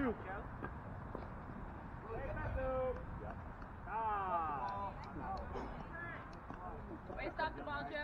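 Players' voices calling out across a softball field during a play: a few short shouts, a longer falling call about four seconds in, and more voices near the end.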